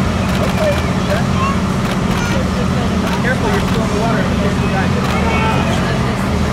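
Background chatter of many people talking at once over a steady low rumble of machinery.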